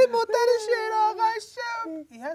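A high voice wailing in long, wavering sung notes, a keening mourning lament with a sob-like break near the end.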